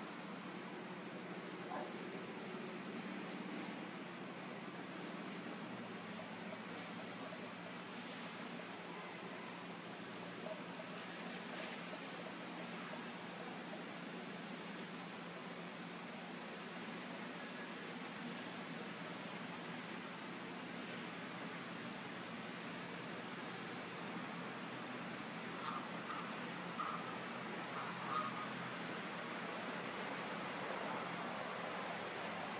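Insects trilling steadily in a high, evenly pulsing tone over a soft background hiss. A few faint short sounds come in near the end.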